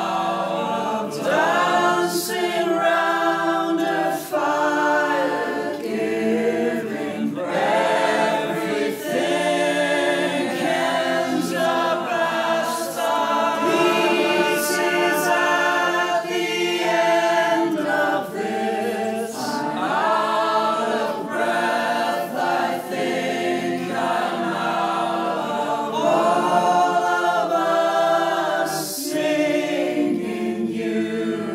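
Several voices singing together in layered harmony, choir-like, with little or no instrumental backing, as part of a recorded song.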